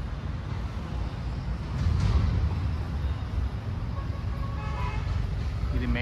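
Steady low rumble of road traffic, with a brief higher-pitched tone about four and a half seconds in.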